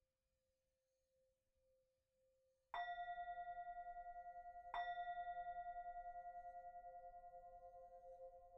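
Singing bowl struck twice, about three seconds in and again two seconds later. Each strike rings on with a pulsing tone that slowly fades. Before the first strike, a faint ring lingers from an earlier strike.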